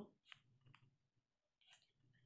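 Faint clicks of a pen on notebook paper while digits are written: two small ticks in the first second and a short scratch near the end.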